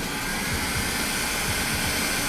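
Electric heat gun blowing a steady rush of hot air onto a hydraulic control valve, heating its thermal switch to make it trip.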